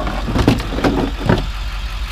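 Hard plastic knocks and rattles as a red plastic case of roadside warning triangles is handled and set into a plastic tool case, several sharp ones in the first second and a half. A vehicle engine idles underneath as a steady low rumble.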